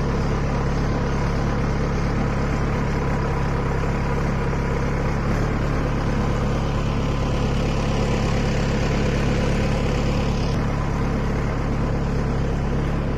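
An engine idling steadily, a low even hum that holds unchanged throughout.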